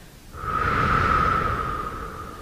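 A long, deep breath that swells up about half a second in and slowly fades, over a held note of soft background music.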